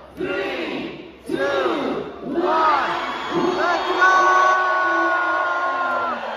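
A large crowd shouting together in rhythm, one loud call about every second, then a long steady held tone from about four seconds in as a balloon drop is released.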